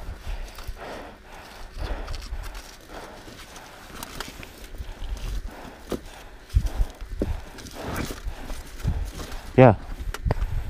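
Loose rocks being lifted and set down by hand, knocking and scraping against other stones in a run of irregular clacks, with a few heavier thumps about six to seven seconds in.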